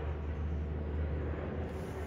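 A steady low hum with a faint hiss over it, unchanging, with no distinct clicks or knocks.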